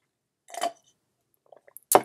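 A sip through a plastic straw from a glass of drink, with one short swallow or slurp about half a second in, then a faint mouth click just before speech starts.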